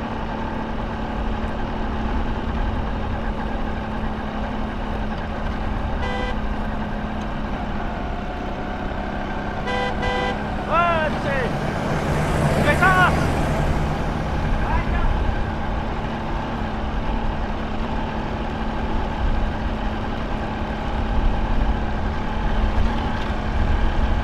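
A motor vehicle's engine running with a steady low rumble, and short horn toots about six and ten seconds in.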